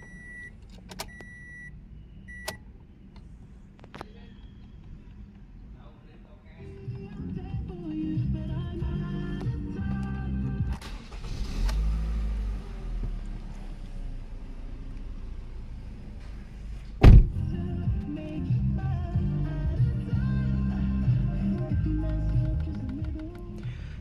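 Three short electronic chimes from the car's dashboard, then a song playing on the car's audio system over a low rumble, with one sharp knock about seventeen seconds in.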